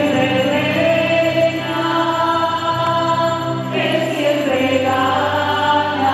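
A slow hymn sung by a group of voices, with long held notes and a change of note about four seconds in.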